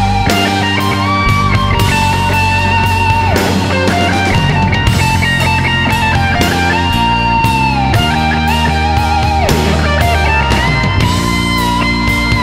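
Blues-rock band recording in an instrumental passage: a lead electric guitar holds long notes with vibrato and bends, over bass and drums.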